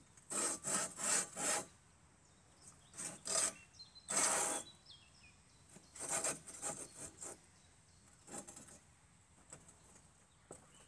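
Chtitbine hand-pushed hoeing carriage being slid back and forth along its rails, its hoe blades scraping through the soil: short scraping strokes, four quick ones at the start, then groups of strokes with short pauses between them.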